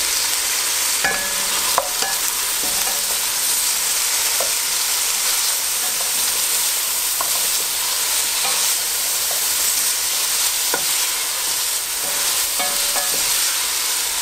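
Frozen broccoli sizzling in hot oil in a stainless steel pot, a steady hiss as the ice on it turns to steam. A wooden spoon stirring it, knocking against the pot now and then.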